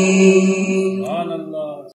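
A man's voice, heard through a microphone, holds a long sung note of an Urdu naat. The note bends in pitch about a second in, then fades away.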